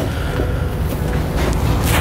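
A vehicle engine running steadily in the background, a low, even rumble.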